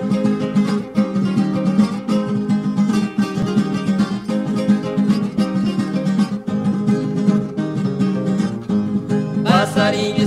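Instrumental introduction of a recorded sertanejo raiz song: ten-string viola caipira and acoustic guitar picking a lively melody over bass notes. Singing voices come in near the end.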